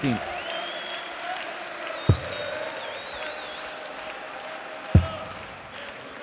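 Arena crowd noise with a shrill whistle over it, and two darts thudding into the bristle dartboard about three seconds apart.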